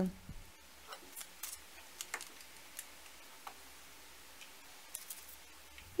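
Faint, scattered light clicks and taps of a metal pizza-wheel cutter trimming the edge of a stack of dough rounds on a wooden board.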